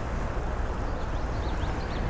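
Steady rush of shallow stream water flowing, with a low rumble underneath.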